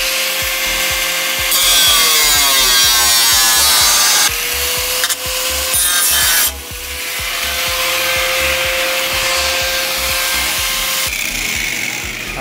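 Corded angle grinder cutting into the inner sheet metal of a car's hood. Its motor whine holds mostly steady, its pitch dips under load a couple of seconds in, and it eases off briefly midway. It stops about a second before the end.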